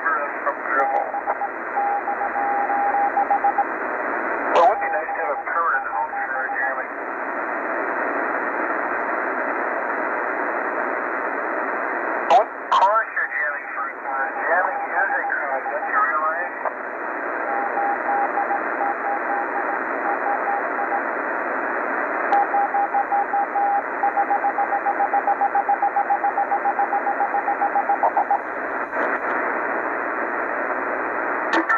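Shortwave receiver's speaker tuned to 3840 kHz lower sideband: a steady hiss of static with a single mid-pitched tone that keys on and off in long runs, pulsing rapidly near the end. Brief snatches of garbled voice come through about 5 and 13 seconds in, with sharp clicks around 12 seconds.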